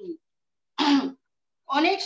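A woman clears her throat once, a short sharp burst about a second in, between phrases of her speech.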